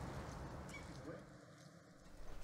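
Faint outdoor background noise with a low rumble, fading to near silence in the second half.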